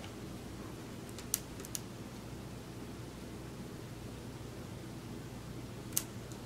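Steady low room hum, with two small sharp clicks about a second and a half in and another near the end.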